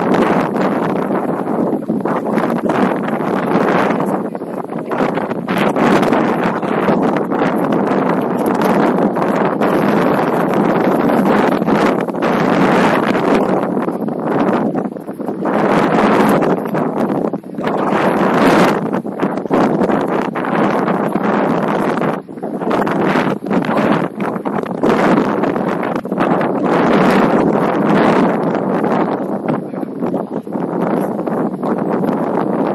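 Wind gusting on the microphone: a loud rushing noise that swells and dips irregularly.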